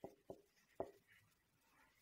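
Writing: three faint, short strokes in the first second, then near silence.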